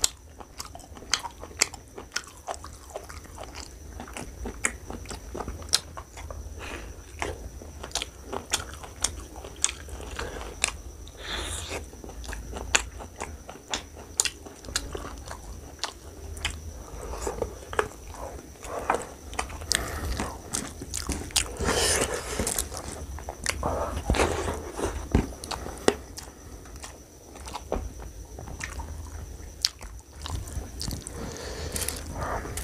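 Close-miked chewing of rice and spicy mutton curry eaten by hand, with many sharp, wet mouth clicks and smacks at an irregular pace.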